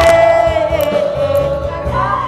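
A woman singing into a microphone over amplified backing music, holding one long note that sags slightly in pitch, with a beat underneath.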